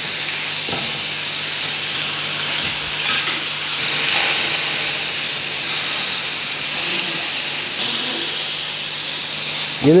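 Lamb pieces searing in hot rendered lamb fat in a stainless steel pan: a steady, even sizzle over high heat as the meat browns and forms a crust.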